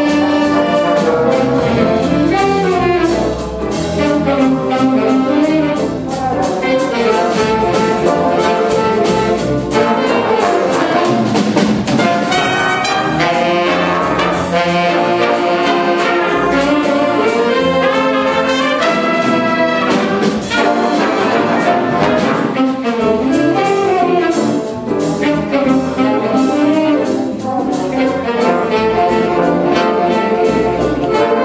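A live high school jazz big band playing: trumpets, trombones and saxophones play ensemble lines together over a piano, guitar and bass rhythm section.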